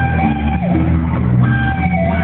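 Live rock band playing, with electric guitars carrying held notes over bass and drum kit.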